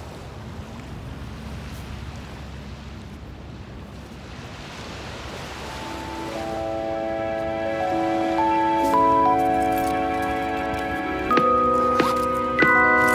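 Wind and surf noise for the first few seconds, then background music of slow held chords fades in about halfway and grows louder.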